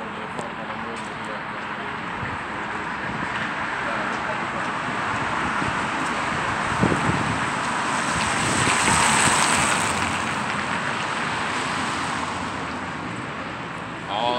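Street traffic: a vehicle passing by, its noise building slowly to a peak about nine seconds in and then fading away.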